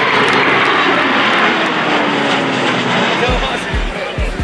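Jet engines of a Boeing 737 airliner flying past, a loud steady roar with a faint tone slowly falling in pitch. Music with a regular thumping beat comes in near the end.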